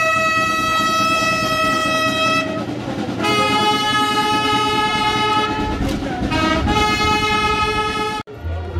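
A wind instrument in the procession's music holding long notes: a higher note for about two and a half seconds, then two lower held notes after short breaks.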